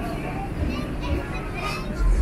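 Background chatter of several people's voices, none close to the microphone, with music faintly underneath.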